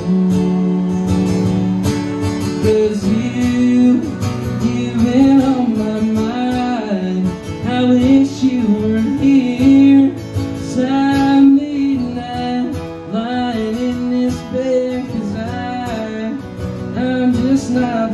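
Live acoustic country music: two acoustic guitars strumming while a man sings the melody, opening on a long held note.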